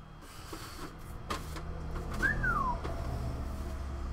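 A short whistle about two seconds in, one note that starts high and slides down in pitch, over a low steady hum and a few light knocks.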